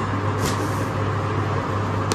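Steady low hum over even background noise, with a brief faint rustle of silk sarees being handled about half a second in.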